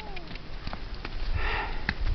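A short breathy sniff about halfway through, with a few faint sharp knocks and low thuds around it.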